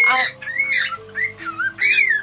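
Cockatiel calling in a quick run of short chirps that rise and fall in pitch, the last one the loudest, over soft background music.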